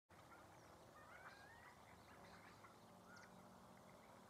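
Near silence with a few faint distant bird calls: thin gliding whistles about a second in and again near three seconds, with brief high chirps.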